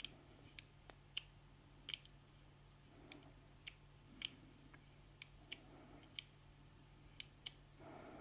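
Faint, irregular small metal clicks from a titanium-handled folding knife as its blade is worked at the pivot, about a dozen in all over the stretch.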